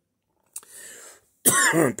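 A man coughs to clear his throat, a loud cough about a second and a half in, after a short hush.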